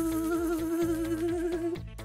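Imitated bee buzz: one long, slightly wavering buzzing tone that stops near the end, with soft background music under it.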